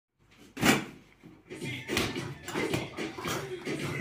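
A loud single thump about half a second in, a child's fist hitting a freestanding punch ball on a stand, followed by a few lighter knocks under talking.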